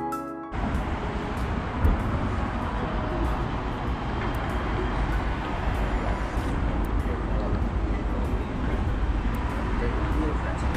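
Background music cuts off about half a second in, giving way to steady outdoor street ambience: road traffic noise with a low rumble. A single knock comes near two seconds in.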